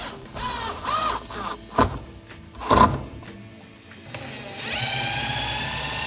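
Cordless drill driving screws into a metal TV wall-mount plate: a few short trigger pulls with rising whines early on, a brief loud burst near the middle, then a steadier run of about a second and a half whose whine drops away as the motor stops.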